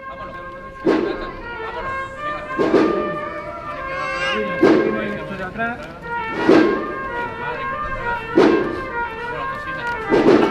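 Cofradía band (agrupación musical) playing a slow processional march: held brass chords with a heavy drum beat falling about every two seconds.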